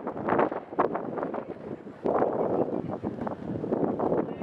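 Gusty wind noise on the microphone, surging and easing in uneven bursts.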